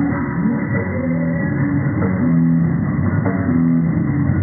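Live rock band playing an instrumental passage: electric guitars and bass over a drum kit, with a low two-note riff repeating about once a second.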